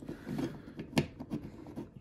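Hard plastic parts of a Transformers action figure clicking and rubbing as its limbs are moved into robot mode, with one sharp click about a second in.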